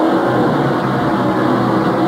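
NASCAR Winston Cup stock-car V8 engines running, a steady drone with several held pitches.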